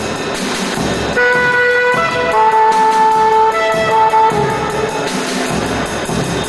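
Free-improvised jazz: a saxophone playing long held notes that shift in pitch a few times, entering about a second in over a drum kit and cymbals.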